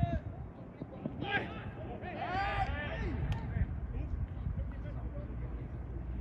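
Players and coaches shouting across an outdoor football pitch: a short call about a second in and a longer shout around two to three seconds in, with a single sharp click just after. A steady low rumble runs underneath.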